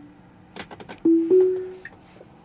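Tesla cabin alert chime: a clean two-note chime, the second note a step higher, about a second in and fading away, a driver-assistance warning sounding with an alert banner on the screen. A few faint ticks come just before it.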